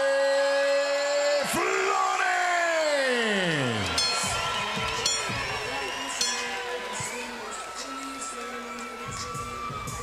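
Arena music with crowd cheering and whooping. A long held note at the start gives way to a falling sweep about two seconds in, and the music then runs on more steadily, slowly getting quieter.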